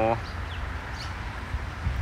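Outdoor ambience: a low, unsteady rumble of wind on the microphone, with a few faint, short bird chirps.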